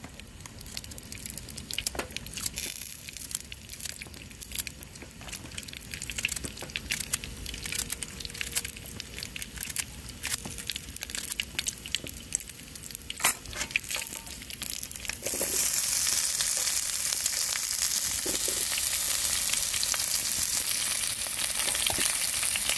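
A small knife cutting thick green onion pieces by hand, heard as scattered sharp clicks and taps. About fifteen seconds in, sliced meat and green onion go into a hot oiled frying pan and a loud, steady sizzle of frying starts suddenly.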